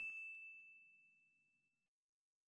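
The fading tail of a bell-like 'ding' sound effect: one high ringing tone dying away during the first second or so, then near silence.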